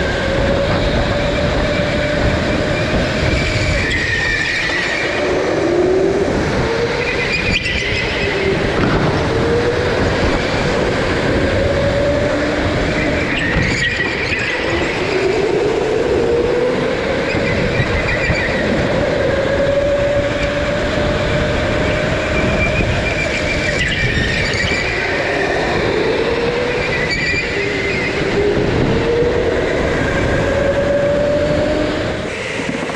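Racing go-kart's motor heard from the driver's seat during hot laps, whining up in pitch on each straight and dropping back into the corners, several times over, over steady rumbling road and tyre noise.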